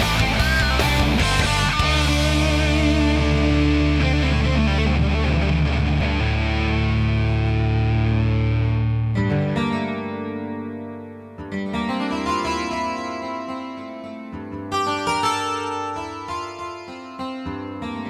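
Instrumental rock band intro: a loud distorted electric guitar chord with low bass rings out and fades away over about nine seconds. Then a quieter keyboard passage of separate notes and chords begins.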